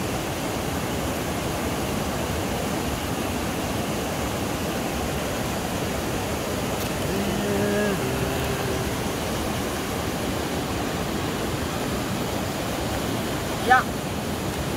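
River water rushing steadily over rocks through small rapids.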